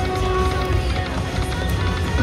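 Slot machine playing its electronic reel-spin tones and jingle as the reels turn and stop, over the steady hum of a casino floor.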